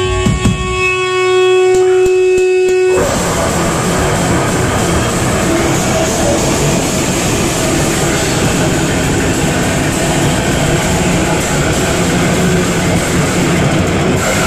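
Live heavy rock band: a single held guitar note rings with a few drum hits, then about three seconds in the full band crashes in, a dense wall of distorted electric guitar, bass and drums played loud and steady.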